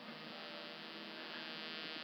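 A faint, steady electrical buzz with many overtones, growing slightly louder toward the end.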